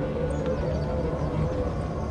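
Soundtrack music with sustained, steady held notes over a low rumble.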